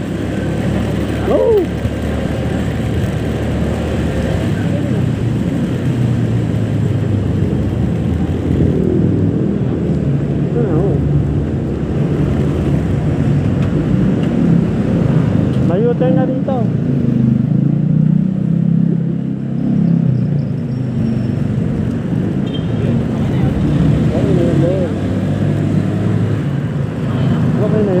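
Honda Click 125 scooter's single-cylinder engine running while riding, mixed with wind noise on the handlebar-mounted microphone: a steady low rumble with a few short rising and falling pitch sweeps.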